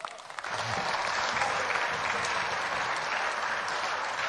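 Applause from the senators in the chamber at the end of a speech, building up in the first half second and then holding steady.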